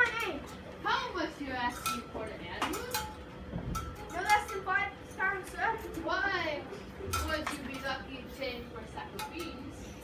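Children's voices talking over one another in a classroom, with scattered sharp clicks and clinks of small hard objects.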